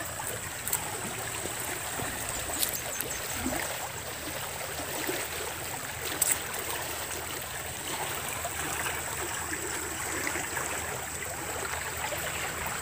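Shallow creek flowing over a sandy bed: a steady rush and trickle of running water.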